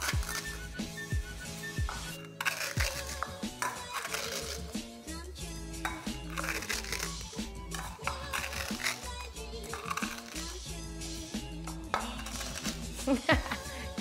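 Background music with a steady bass beat, over dry cereal flakes being crushed in a bowl with a stainless-steel cup, crunching in several short spells.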